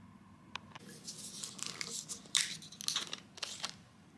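Crinkling, crackling plastic in a string of short bursts lasting nearly three seconds, after a single click about half a second in: a plastic bottle of hojicha (roasted green tea) being handled.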